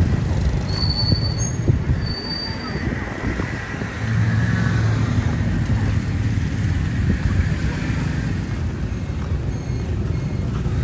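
Motor traffic on a city street, engines running as a steady low rumble, with brief high-pitched squeals about a second in, again at about two and a half seconds, and more faintly around four seconds.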